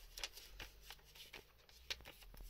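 Faint rustling of paper being handled, with a few light ticks and a sharper one near the end.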